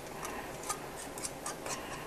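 Metal screw band being twisted onto the threads of a glass pint canning jar by hand, giving a run of light, irregular clicks and scrapes.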